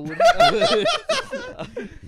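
Men laughing hard, loudest in the first second or so and trailing off toward the end.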